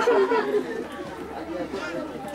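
Indistinct chatter of several spectators' voices, with no clear words.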